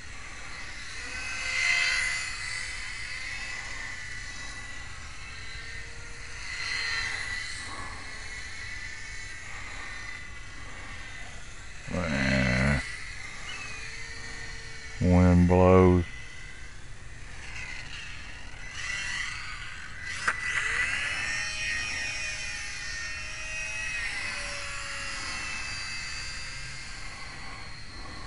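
FlyZone PlayMate micro electric RC airplane's motor and propeller whining in flight, swelling and fading and shifting in pitch as the plane passes back and forth. It is loudest about 2 s in, around 7 s, and from about 19 s. Two short bursts of a man's voice come about halfway through.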